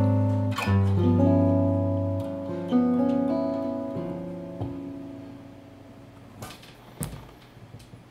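Solo archtop jazz guitar playing the closing chords of a bossa nova tune: a few chords struck and left to ring, dying away over several seconds. Two soft knocks follow near the end.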